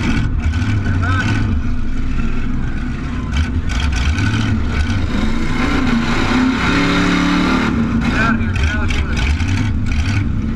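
Demolition derby car's engine running loudly and revving as the car drives, heard from on board, with rattling and mechanical noise around it.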